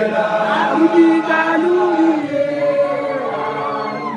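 A group of voices chanting a traditional song together, the notes held long and bending up and down.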